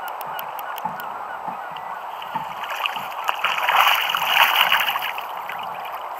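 Calls of a flock of birds, many overlapping, swelling about halfway through and fading again, over small waves slapping against the kayak.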